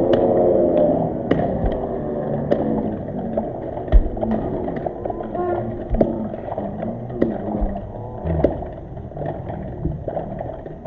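Voices calling and shouting on a football pitch during a match, loudest at the start. Sharp knocks are scattered throughout, the loudest about four seconds in.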